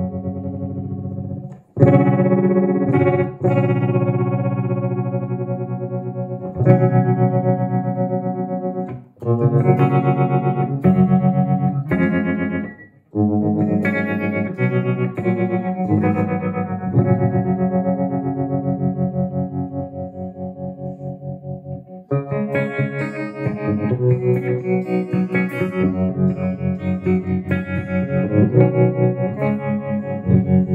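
Electric guitar chords strummed and left to ring through a homemade STM32 digital tremolo pedal, with a fresh strum every few seconds. The volume pulses quickly and evenly as the triangle-wave LFO modulates the amplitude.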